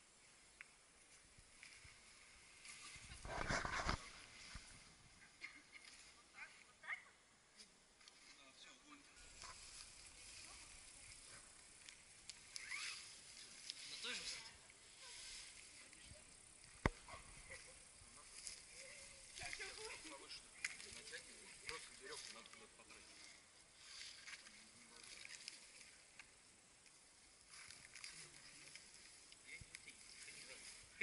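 Quiet outdoor sound with faint distant voices and rustling, a short dull thump about three seconds in and one sharp click near the middle.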